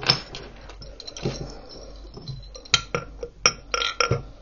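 Glass bottles and their metal hanging chains clinking and knocking against each other and the tabletop as they are handled, a scatter of sharp clinks with the loudest grouped near the end, some leaving a short glassy ring.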